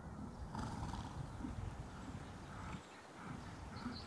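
Ridden horse walking on a sand arena surface: soft, regular hoofbeats, with a brief hiss about half a second in.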